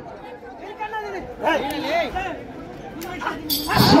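Men's voices talking and calling out over each other, with a loud, sudden shout near the end.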